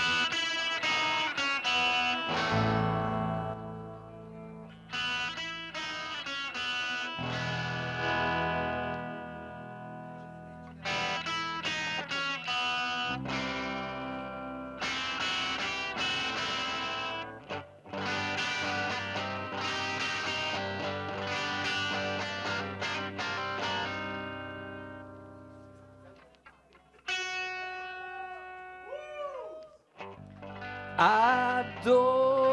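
Live rock band playing the instrumental opening of a song: electric guitar chords, with bass guitar coming in about two and a half seconds in. The playing thins out near the end, with a few sliding notes.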